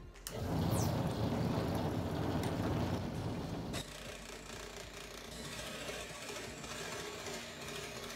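Benchtop scroll saw running, its reciprocating blade cutting plywood. It is loudest for the first few seconds, then drops to a quieter, steady run.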